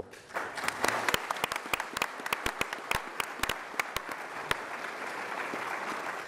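Audience applauding: a dense patter of many hands clapping that starts just after the speaker hand-over and fades out near the end.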